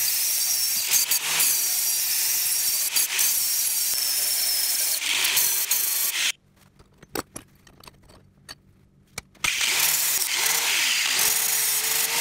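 Angle grinder with an abrasive disc grinding the steel handle of an Estwing hatchet, a steady loud grinding of metal. It breaks off about six seconds in, leaving faint clicks and a low hum for about three seconds, then starts grinding again.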